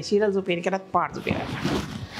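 A woman's voice for about the first second, then the rustle of a silk saree being gathered and folded by hand.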